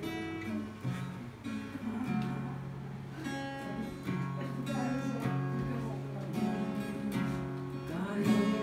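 Acoustic guitar played solo, strummed chords with their notes ringing on.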